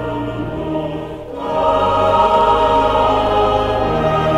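Church choir singing with pipe organ accompaniment: sustained chords over deep held bass notes, thinning briefly about a second in, then swelling fuller.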